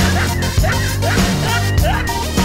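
Upbeat title jingle with a steady bass line and drums, overlaid with several short, rising squeaky cartoon-style sound effects.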